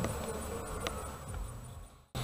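A faint buzz over a steady low background hum and hiss, fading away near the end.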